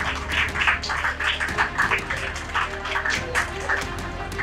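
Scattered hand clapping from a small audience, several claps a second, over background music.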